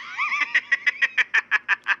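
A man's drawn-out mocking laugh: a gliding opening note breaks into a long run of rapid, even 'ha-ha-ha' pulses, about six a second. It is the Shadow's trademark laugh.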